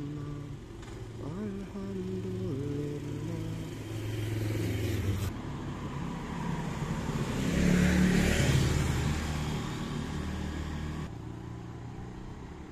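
Motorbike engines running, with the pitch rising and falling in the first few seconds. A scooter then approaches and passes close by: loudest about eight seconds in, then fading.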